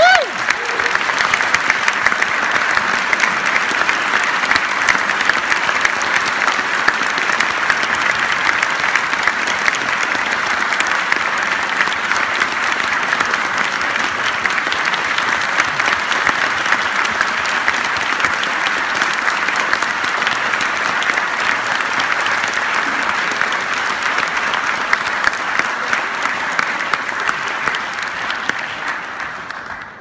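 Audience applause, dense and steady, dying away near the end.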